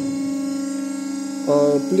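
Hydraulic power unit of a Weili MH3248X50 cold press running with a steady electric hum as the press plate is lowered.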